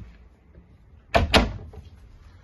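Small under-counter fridge door being shut, with two quick knocks about a second in.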